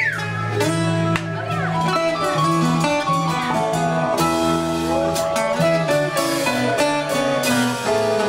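Live acoustic band playing a jam-band tune: strummed acoustic guitars and mandolin over drums and keyboard, with steady cymbal strokes.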